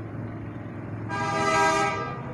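A vehicle horn sounds once, a steady, unchanging tone lasting just under a second, starting about a second in, over a steady low background hum.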